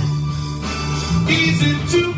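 Karaoke: a man singing into an amplified microphone over a recorded backing track with bass and guitar.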